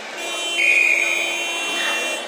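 Electronic buzzer sounding one steady, buzzy tone for about a second and a half, signalling the end of the wrestling bout.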